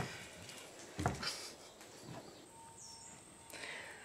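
Faint outdoor background with a single short, soft knock about a second in.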